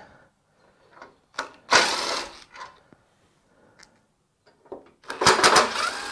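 Cordless DeWalt impact driver loosening star bolts on a Ford Bronco's steel front bumper, in two short runs of rapid hammering: one about two seconds in and a second starting near the end.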